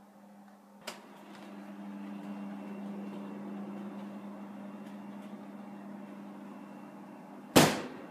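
A steady low hum that grows louder after a short click about a second in, then one loud sudden bang near the end.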